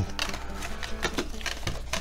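Cardboard box insert and a plastic action figure being handled: a run of small irregular clicks, taps and scrapes over a low steady hum.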